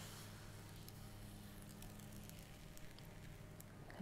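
Faint sizzle and crackle of crepe batter against the hot non-stick pan of a 1970s Sunbeam M'sieur Crepe maker held face-down in the batter, over a low steady hum.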